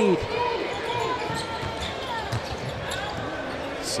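A basketball being dribbled on a hardwood court, with the arena crowd's voices murmuring underneath.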